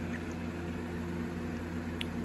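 Room tone: a steady low hum with faint hiss and no distinct sounds.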